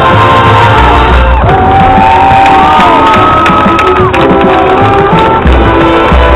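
Marching band playing full out, sustained brass chords over drums, with the crowd in the stands cheering and whooping over the music.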